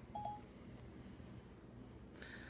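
A single short electronic beep from an iPad's Siri listening tone, lasting about a fifth of a second, near the start. Faint room tone follows.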